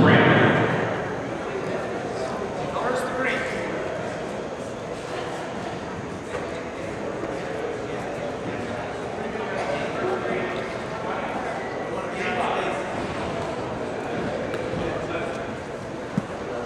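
Indistinct voices of people calling out in a gymnasium during a wrestling match: loud at the start and dying away within the first second, then a steady murmur with a few brief louder calls.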